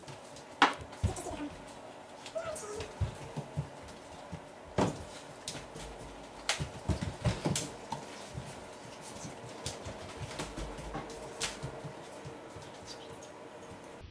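Scattered short knocks and clicks, the sharpest about half a second in and a denser run in the middle, with a few faint, brief voice-like sounds early on.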